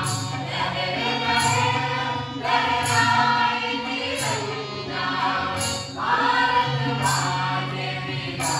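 A group of men and women singing a folk song together, accompanied by hand drums and harmonium. A bright rhythmic accent recurs a little more than once a second.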